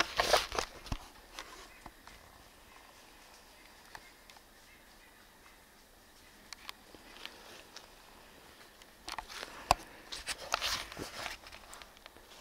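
Faint, quiet forest ambience. About nine seconds in come a couple of seconds of brushing and crunching, footsteps on dry leaf litter as a handheld camera is carried.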